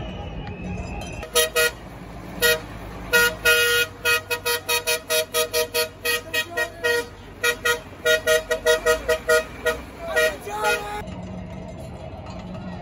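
A vehicle horn honked in a long run of short blasts, two pitches sounding together, coming two to four times a second in irregular bursts. The honking starts about a second in and stops shortly before the end.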